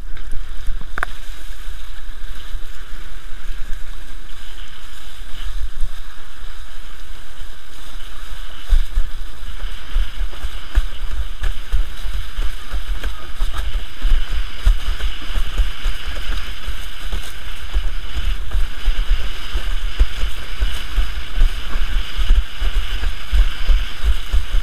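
Windsurf board sailing fast in about 16 knots of wind: water rushing and hissing along the board, with wind buffeting the microphone in a heavy low rumble. The hiss grows stronger about ten seconds in.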